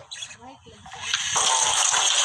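A kitchen sink tap is turned on about a second in, and water runs from it in a strong, steady flow into the sink.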